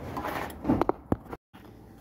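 A few light knocks and scraping sounds from objects being handled and slid against each other, with the sound cutting out abruptly for a moment about halfway through.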